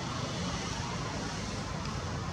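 Steady rushing background noise with no distinct events.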